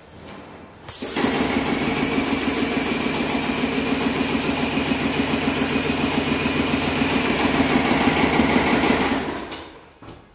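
Paint sprayer's electric pump kicking on suddenly about a second in and running steadily with a rhythmic mechanical hum, while the spray gun hisses as paint is sprayed. The hiss stops a couple of seconds before the pump winds down near the end.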